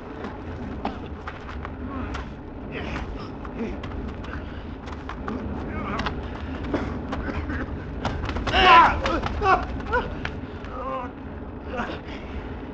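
Radio-drama forest-fire sound effect: a steady low rumble of burning with scattered crackles. Over it a man strains and groans, loudest about eight and a half seconds in.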